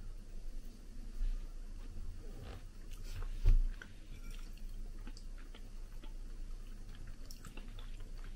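People chewing mouthfuls of soft microwaved ready meal, with light clicks of forks against ceramic bowls. A louder low thump comes about three and a half seconds in.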